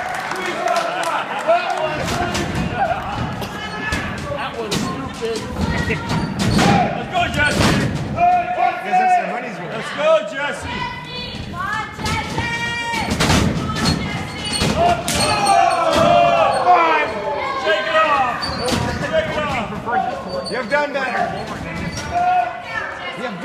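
Wrestlers' bodies thudding onto a wrestling ring's canvas and boards, repeated sharp impacts with the ring ringing under them, over audience members shouting and calling out.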